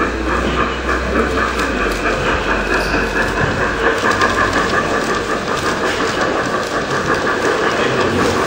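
LGB garden-scale model train, a small steam locomotive hauling a coach and freight wagons, rolling past on the track with a steady running noise and a clicking of wheels over the rail joints.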